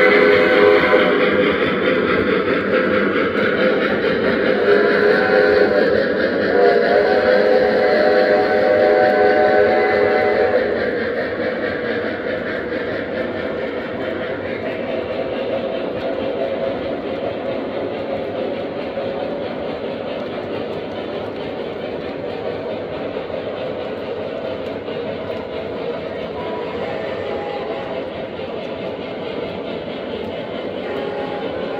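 O-gauge model freight train running past on three-rail track. For the first ten seconds the Lionel Legacy steam locomotives' onboard sound system is loudest, with steady held tones. After that comes the even, steady rumble of the freight cars' wheels rolling on the rails.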